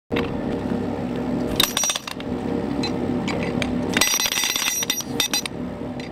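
Road-repair machinery: an engine running steadily, with short bursts of rapid metallic hammering from a pneumatic tool, about one and a half seconds in and again at four seconds. The engine hum drops away after the second burst.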